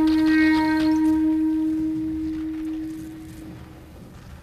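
Clarinet holding one long low note that slowly fades away over about three and a half seconds.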